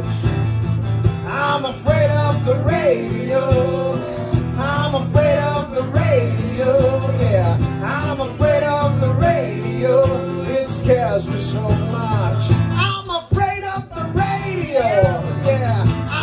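A man singing live to his own strummed acoustic guitar. The guitar and voice drop out briefly about thirteen seconds in, then carry on.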